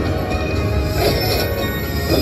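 Video slot machine's free-game bonus music playing as the reels spin and stop, with a brief bright accent about a second in.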